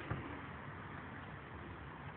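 Faint, steady background hiss of room noise, with no distinct event.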